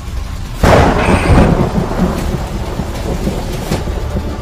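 Thunderclap: a sudden loud crack about two-thirds of a second in that rumbles away over the next second or so.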